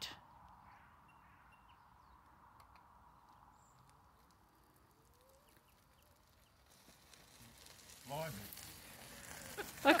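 Mostly near silence. In the last three seconds a faint rustle of an electric folding wheelchair's wheels grows louder as it approaches over gravel and tarmac, with a short faint call about eight seconds in.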